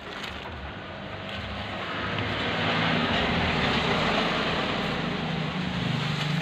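A motor vehicle passing on the road, its engine and road noise growing louder over the first half and staying loud with a low steady hum near the end.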